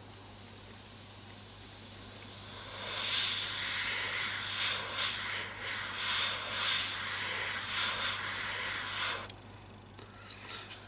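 Airbrush spraying heavily thinned paint at about 1 bar through a 0.15 mm nozzle: a steady hiss of air and paint, fainter at first and louder from about three seconds in, swelling and dipping as the trigger is worked, then cutting off suddenly near the end.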